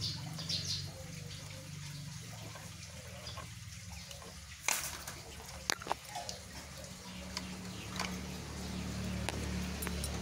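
Pliers twisting a tight threaded fitting on a water pump's outlet pipe, giving a few sharp metallic clicks and scrapes, most of them in the second half, over a steady low hum.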